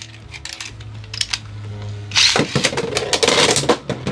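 Beyblade X spinning tops (Dranzer Spiral 4-60F and Dransword 3-60N) in a plastic stadium. The first part is quiet with a low hum and a few clicks. About two seconds in a loud launch begins, then rapid plastic clicking and clattering as the tops hit each other and the stadium walls.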